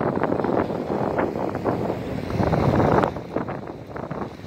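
An old bicycle rattling as it coasts fast downhill, with wind rushing over the phone microphone; the rush eases off about three seconds in.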